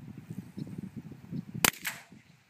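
A single shot from a .22 rifle: one sharp, light crack about one and a half seconds in, over low background rustling.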